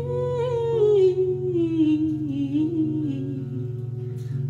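A woman's voice holding one long sung note that slides slowly downward, over steady, ringing acoustic guitar.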